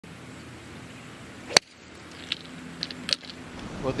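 Golf iron striking the ball: one sharp crack of a tee shot about one and a half seconds in.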